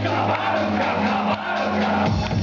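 Live band music, loud and steady, with the audience singing along.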